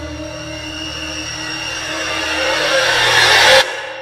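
A swelling horror-style riser sound effect: a low rumbling drone with a few held tones under a rising whooshing hiss. It grows steadily louder and cuts off suddenly just before the end.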